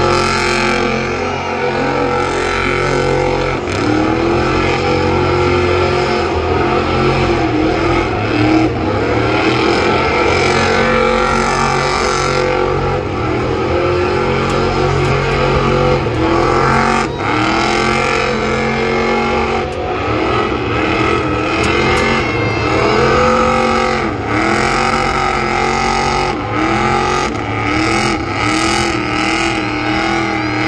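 Car engine revving hard during a tire-smoking burnout, its pitch swelling and dropping again and again, the swells coming quicker, about two a second, near the end.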